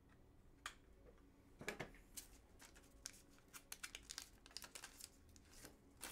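Faint crinkling and rustling with scattered small clicks, from trading cards and their plastic packaging being handled. The rustles begin about half a second in and come thickest in the second half.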